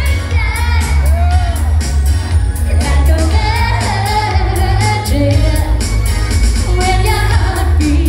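Live pop performance: a woman sings into a handheld microphone over loud dance-pop backing with heavy bass and a steady drum beat.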